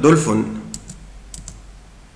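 Light computer clicks, two pairs about half a second apart, as the slideshow is advanced to the next slide.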